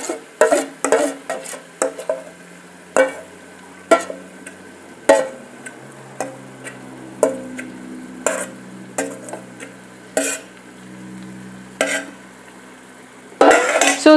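A metal spoon scraping and knocking against a stainless steel mixing bowl as a paste is scraped into an electric pressure cooker's pot: irregular sharp clicks and taps. Under it, a faint sizzle of food sautéing in the cooker.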